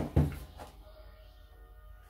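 A single sharp plastic click or knock about a quarter of a second in, as a vacuum cleaner's extension wand is pushed into its floor-head attachment, followed by quiet handling.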